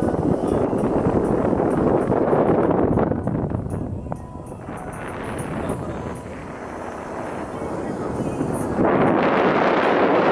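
Wind and road noise from a moving car, quieter through the middle and jumping louder again near the end.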